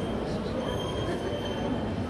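Electric guitar played live through an amplifier with a drum kit, high held tones ringing and fading in and out over a dense low end.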